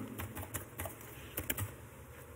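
Computer keyboard being typed on: a string of light key clicks, with a quick cluster of several about a second and a half in.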